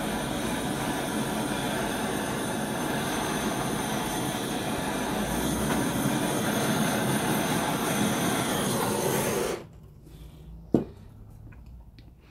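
Handheld heat gun running, a steady blowing noise with a faint motor whine, played over wet acrylic pour paint; it cuts off suddenly about nine and a half seconds in, and a single sharp click follows a second later.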